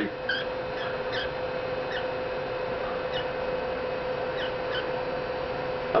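Pet cockatiel giving short, quiet chirps at irregular intervals, over a steady low hum.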